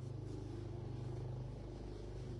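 A motor running with a steady low hum that has a fine rapid flutter, easing off slightly near the end.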